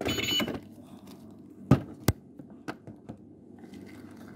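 Handling noise from a handheld phone as it is carried and moved: a short burst of rustling at the start, then a knock and a sharp click about two seconds in, and a few faint taps.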